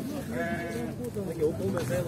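A sheep bleats once, lasting under a second, over background voices.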